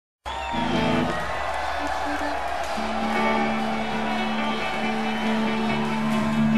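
A live Irish folk-rock band playing the opening of a song, with long held instrumental notes and a deep sustained note coming in about halfway through. A voice is heard briefly at the very start.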